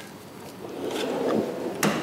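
Drink bottles shifting and being lifted out of the pulled-out beverage drawer's plastic liner on a stainless steel cart: a low rustling scrape that grows louder, with a few light ticks and a sharper click near the end.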